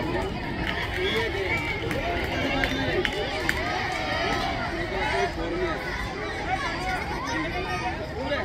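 A crowd of spectators and players shouting and calling out over one another, many voices at once.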